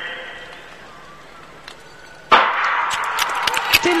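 A hushed speed-skating arena, then a starting pistol shot about two seconds in, followed at once by loud, steady crowd cheering with scattered sharp clicks.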